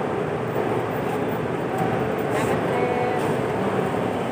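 Steady running noise of a bus at close range in a bus terminal, with faint voices in the background.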